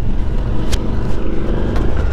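Suzuki V-Strom adventure motorcycle riding on a loose gravel road: a steady low rumble of engine, wind and tyres, with a short sharp click about three quarters of a second in.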